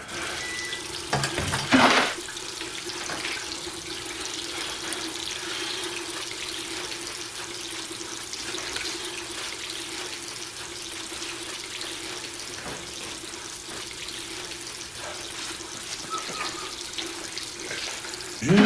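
Restroom sink tap running steadily into a ceramic basin, with a faint low hum under the flow. About two seconds in there is a louder, brief splashing burst.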